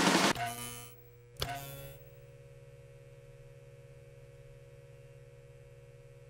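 Audience applause fading out within the first second, a single sharp click about a second and a half in, then a steady low electrical hum.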